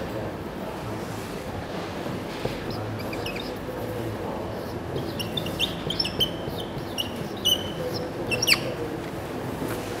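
Whiteboard marker squeaking against the board as equations are written: short high chirps, a few early on and a dense run in the second half, one of them a quick rising squeal. A steady room hum runs underneath.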